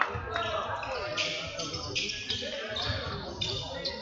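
A basketball dribbled on a wooden gym floor, with repeated dull bounces, along with voices of players and spectators in the hall.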